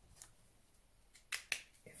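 A few faint, sharp clicks, two of them close together about a second and a half in: a highlighter pen being handled and put down on the desk.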